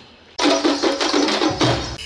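Audience applause that breaks out suddenly after a short lull, a dense crackle of many hands clapping.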